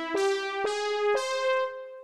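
Software synthesizer notes played back from a MuseScore score: single sustained, bright keyboard-like notes, a new one about every half second. The last one fades away near the end.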